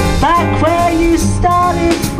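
Live small-group jazz: a woman singing a wavering, gliding melody over keyboard, double bass and drum kit.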